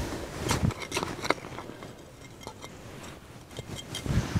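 Hands working soil and plants while setting seedlings into a garden border: a run of short scrapes, rustles and clicks in the first second and a half, then quieter, scattered ones.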